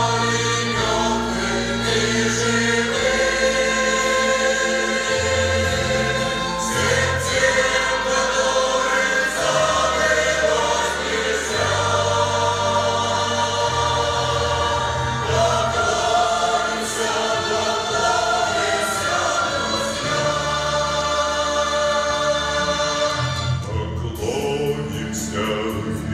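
A mixed choir of women's and men's voices singing a war song over instrumental accompaniment, with a bass line of long held notes that change every couple of seconds.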